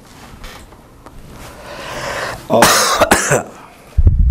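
A man coughing, a short run of sharp coughs about two and a half seconds in, preceded by a rising breath.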